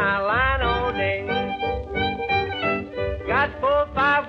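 Late-1930s honky-tonk string-band record playing, its lead line sliding up and down in pitch over a steady bass-and-rhythm beat.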